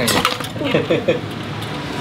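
Short clatter and clinks in the first moments as a cooked lobster is lifted out of a pot of steamed seafood, its hard shell knocking against the pot and the other shellfish.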